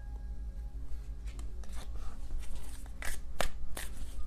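Tarot cards being shuffled by hand: a series of short, crisp papery snaps that start about a second in and come faster toward the end.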